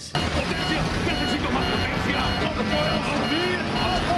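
Steady aircraft engine noise heard inside a cockpit, with short high beeps repeating several times a second or so apart and muffled voices underneath.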